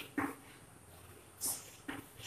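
Chalk on a chalkboard as words are written: three short strokes, one just after the start and two close together in the second half.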